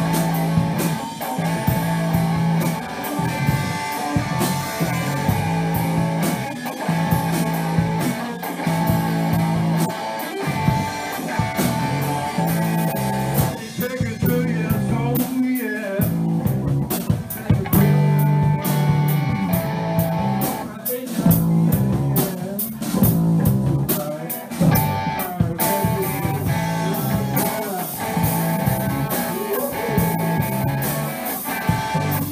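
Rock band playing a song live, with guitar and drum kit going steadily throughout.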